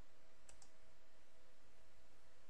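Two quick computer-mouse clicks about half a second in, over a faint steady hum.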